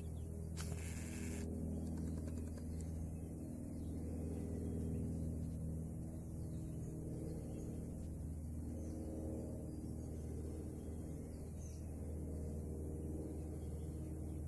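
Male koala bellowing: a deep, continuous, rumbling call full of low overtones that keeps changing in pattern as it goes on. A brief hiss or rustle comes about half a second in.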